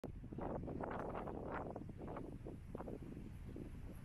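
Wind buffeting the microphone in irregular gusts, a low rumble that is strongest in the first two seconds and then eases.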